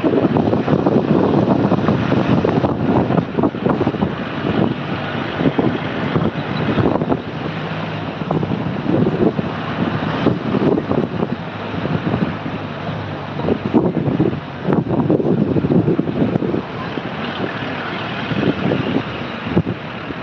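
Wind buffeting the microphone at the open side window of a moving vehicle, over the vehicle's engine and road noise. The loudness rises and falls unevenly throughout.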